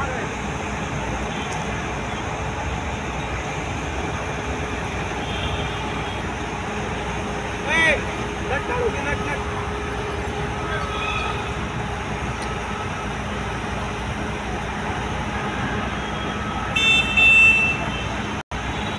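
Steady rumble of road traffic and running engines, with a short horn toot about eight seconds in and a louder, high-pitched toot near the end.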